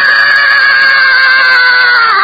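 A man's voice holding one long drawn-out vowel on a steady note, sagging slightly in pitch toward the end, as he stretches out a word mid-sentence.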